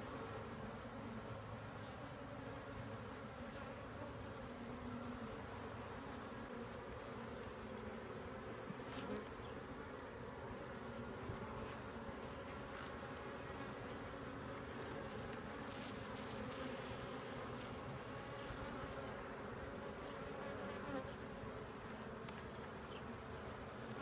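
Steady buzzing hum of a honey bee colony around an opened hive, with the bees covering the brood frames as they are lifted and handled.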